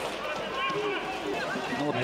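Stadium ambience during a football match: a steady outdoor murmur with faint, distant voices of players and spectators.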